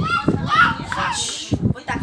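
A child's high-pitched voice talking for about a second and a half, amid the chatter of a small group of people.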